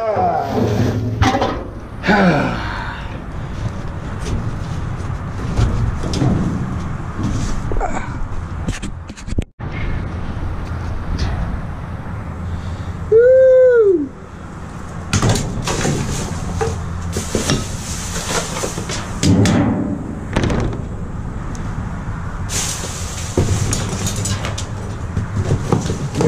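Trash being rummaged through by hand in a metal dumpster: plastic bags and cardboard rustling, with knocks and scrapes against the bin. About thirteen seconds in, a loud sound lasting about a second rises and falls in pitch.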